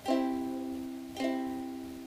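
Ukulele strummed twice, about a second apart, each chord left to ring and fade.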